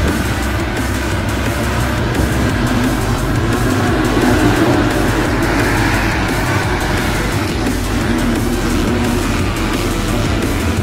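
Background music mixed with the engines of a pack of motocross dirt bikes running at full throttle off the start.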